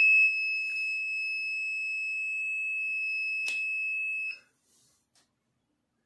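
Small round breadboard buzzer in an Arduino alcohol-detector circuit, sounding one steady high-pitched alarm tone. The MQ-3 sensor has sensed alcohol from a marker held to it. There is a faint click a little before the tone cuts off suddenly, about four seconds in.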